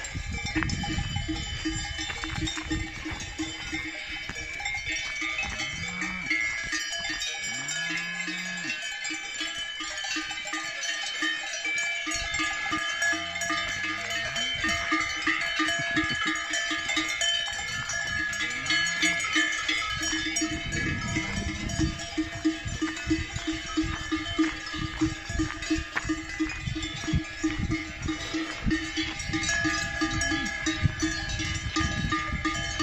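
Many cowbells clanking on a herd of cattle walking by, with a few low moos in the middle.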